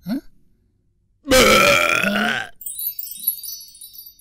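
A cartoon character's loud, drawn-out burp lasting a little over a second, followed by a faint, high twinkling chime effect.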